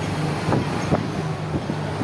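Open-top double-decker tour bus running through city traffic, a steady low engine hum under street and air noise, heard from the open upper deck.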